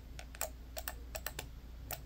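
Buttons on a small handheld corded device pressed with the thumbs, making about eight sharp clicks at uneven intervals, like keyboard typing.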